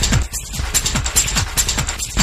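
Techno track from a DJ set: a steady four-on-the-floor kick drum a little over two beats a second, with sharp clicking metallic percussion between the beats. The high percussion drops out briefly near the start, then comes back.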